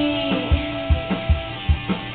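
Instrumental passage of a pop-rock backing track: strummed guitar over a steady drum beat, with no vocal.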